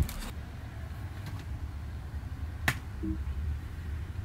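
Low steady rumble of a school bus idling, heard inside the cabin, with one sharp click about two-thirds of the way through.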